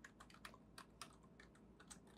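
Faint typing on a computer keyboard: a quick, uneven run of keystrokes as a command is typed in.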